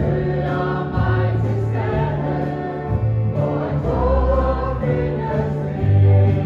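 A choir singing a gospel hymn over instrumental accompaniment, with sustained low notes changing about once a second.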